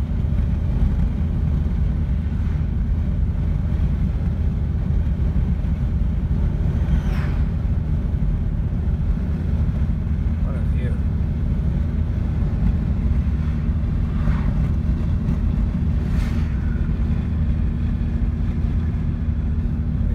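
Steady low road and engine noise inside the cabin of a car driving at speed, even in level throughout.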